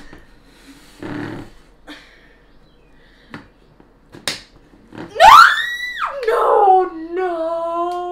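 A few sharp clicks of a plastic stick being pushed notch by notch into a Boom Boom Balloon toy. About five seconds in comes the loudest sound: a girl's high-pitched squeal, rising steeply in pitch, drawn out into a long steady whining note as the balloon holds without popping.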